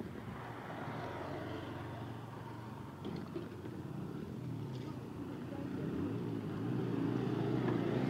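A motorcycle engine on the road, growing louder over the last couple of seconds as it approaches, over a steady low rumble.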